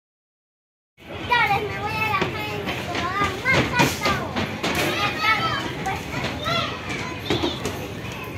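Silence for about a second, then many children shouting, squealing and chattering together at once.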